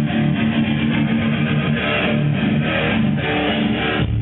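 A live rock band's electric guitar playing chords, each held and then changed about every half second to a second.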